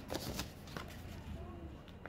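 A sheet of paper rustling as it is flipped open and handled. A few crisp crinkles come in the first half second, then quieter rustling.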